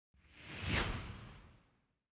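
Whoosh transition sound effect: a single rushing swell with a low rumble beneath it, peaking just under a second in and fading away by about two seconds.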